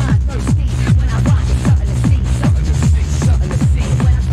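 Fast UK hardcore techno from a DJ set recording: a kick drum hits several times a second, each kick dropping in pitch, over steady bass and busy upper layers.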